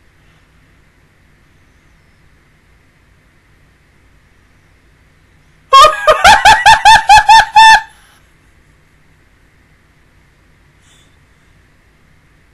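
A woman's high-pitched cackling laugh, about ten quick bursts lasting two seconds, about six seconds in. Otherwise faint room tone.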